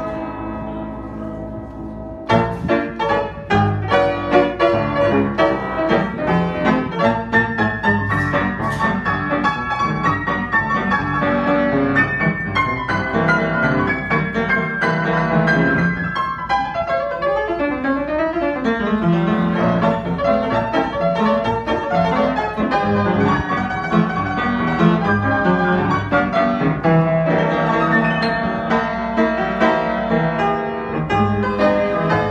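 Sohmer & Son studio upright piano played with full chords and fast runs: a held chord dies away, playing picks up about two seconds in, and rapid descending runs sweep down about halfway through. A big, full sound from a piano in original condition that is not yet fully tuned.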